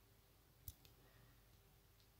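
Near silence: room tone with a faint low hum, broken by one short faint click about two-thirds of a second in and a weaker click just after it.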